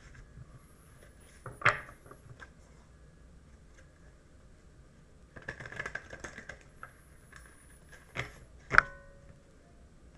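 A tarot deck being shuffled in a short crackly burst of cards, with a few sharp taps on the table. The loudest tap, near the end, rings briefly.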